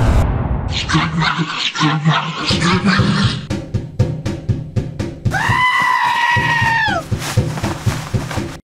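Cartoon soundtrack: an explosion dies away at the start, then rhythmic music with voices, a quick run of clicks, and a long held note that slides down in pitch at its end.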